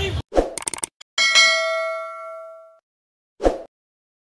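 Crowd chanting cuts off. An end-card sound effect follows: a few quick clicks, then a single bright bell-like ding that rings and fades over about a second and a half, and a short whoosh near the end.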